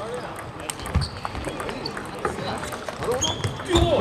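Table tennis ball clicking off the bats and the table in a rally, in an irregular run of sharp clicks, with more ball clicks from neighbouring tables.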